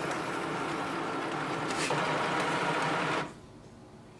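HP DeskJet 3755 sheet-feed mechanism running steadily as it draws a page through to scan it. It gets a little louder about two seconds in and stops abruptly just after three seconds, as the page finishes.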